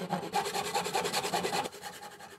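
A fine-toothed handsaw cutting a small softwood block held in a wooden vise. It makes a fast, even run of short rasping strokes that eases off about three-quarters of the way through.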